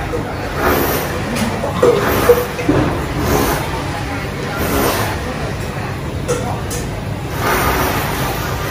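Voices talking in the background over a steady low rumble, with a few light clinks of metal utensils against bowls.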